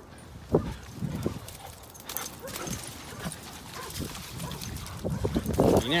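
Dogs playing on a wet, muddy beach: scattered paw thuds and scuffles in the sand, with a sharp knock about half a second in.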